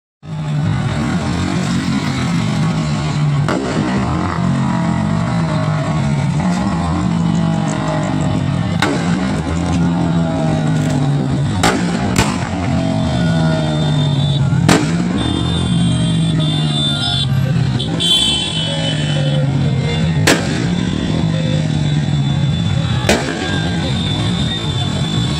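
Many motorcycles running together at low speed in a procession, a dense mix of engine notes rising and falling, with sharp knocks every few seconds and a high steady tone for a few seconds around the middle.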